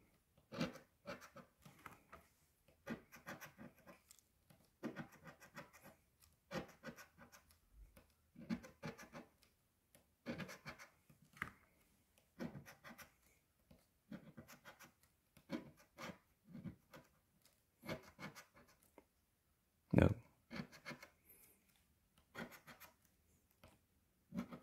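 A copper coin scraping the scratch-off coating from a lottery ticket in short bursts of quick strokes, one spot at a time with brief pauses between. About twenty seconds in comes one louder scrape.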